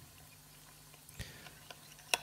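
Near-quiet kitchen handling: half a lemon squeezed over mayonnaise in a small glass bowl with a spoon in it, giving one faint soft click about a second in over a faint low hum.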